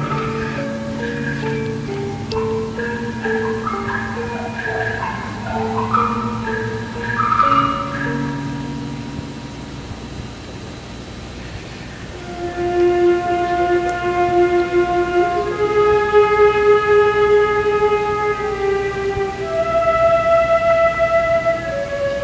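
High school wind ensemble playing a concert-band piece. Moving lines over held low notes, growing softer around ten seconds in, then long sustained chords in the upper voices from about twelve seconds.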